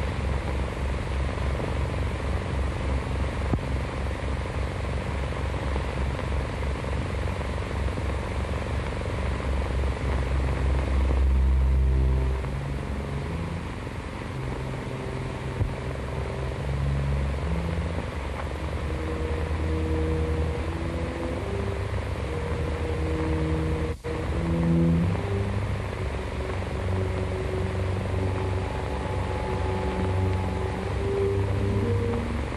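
Film score on a worn early-1930s optical soundtrack: low held notes that change pitch slowly, from about a third of the way in, over a heavy steady hum and hiss. The sound cuts out briefly about four-fifths of the way through.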